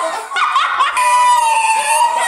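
A woman's high-pitched laughter: a few short laughing bursts, then one long held squeal that falls slightly in pitch.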